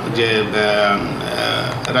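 Only speech: a man talking into a microphone, his voice carried over a loudspeaker in a small hall.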